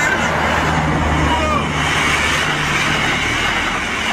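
A motor vehicle's engine running, a steady low hum under traffic noise.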